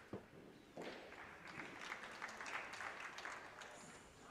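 Faint applause from a spectator crowd in an indoor arena, starting just under a second in and dying away near the end.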